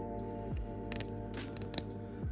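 Soft background music, with a few small plastic clicks and taps about a second in and several more shortly after, as a small plastic Pop Mart figure is pressed onto its plastic display base.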